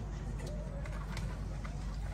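A bird cooing faintly over a low steady background rumble, with a few soft clicks.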